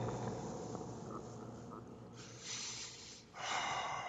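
A person breathing close to the microphone: a fading rush of breath, then two noisy breaths, the second louder, starting about two seconds and three and a half seconds in.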